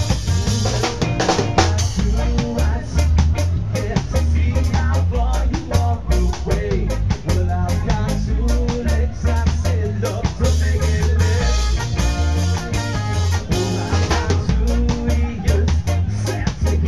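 Live traditional ska band playing: trumpet over a driving drum-kit beat and a stepping bass line.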